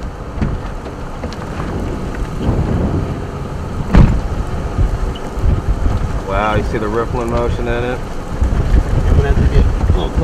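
Strong wind rumbling and buffeting the microphone in a storm near a tornado, with one sharp bang about four seconds in. Near the end a drawn-out, wavering voice-like call comes three times in quick succession.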